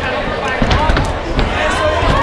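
Boxing gloves landing punches on an opponent: several sharp thuds in quick succession, over a crowd of voices shouting and talking.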